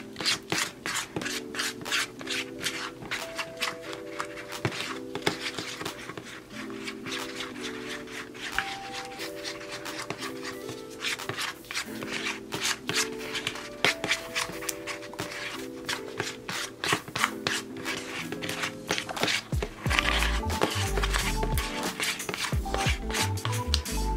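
Thick lip gloss base being stirred and worked in its container: a dense, irregular run of quick scraping, clicking strokes over background music, which picks up a bass beat about twenty seconds in.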